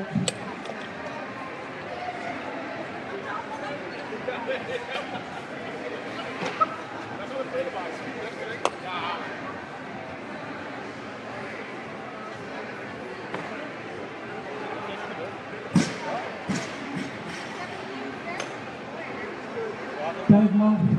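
Bumper plates and barbell collars clanking and knocking as loaders change the weight on a competition barbell: a few sharp knocks, the loudest about sixteen seconds in, over a steady murmur of voices in a reverberant hall.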